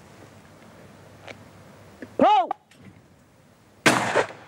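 Shouted "Pull!" about two seconds in, then a single shotgun shot at a clay target near the end, sharp and loud with a short ringing tail.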